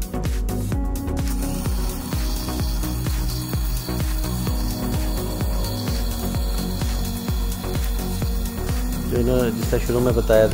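Moulinex 180 W blade coffee grinder running as it grinds coffee. A steady whir starts about a second in and stops near the end, over background music with a steady beat.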